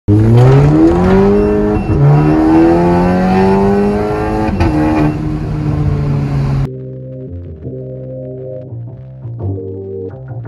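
Volkswagen Passat 1.8 TSI turbo four-cylinder engine through a RES aftermarket valved exhaust, accelerating hard: the note climbs in pitch and drops at gear changes about two and four and a half seconds in. About two-thirds of the way through, the engine sound cuts off suddenly and music takes over.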